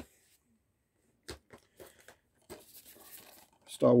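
Blu-ray cases being handled on a table: a few faint clicks and knocks of plastic cases, then about a second of card slipcase rustling and scraping as the next disc is picked up.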